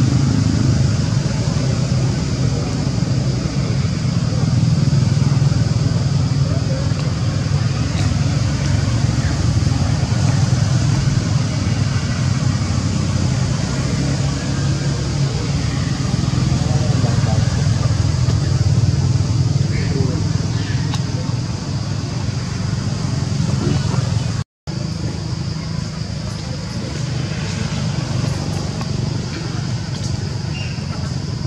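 Steady outdoor background noise: a low, engine-like rumble with indistinct voices. It is broken by a brief silent gap about two-thirds of the way through.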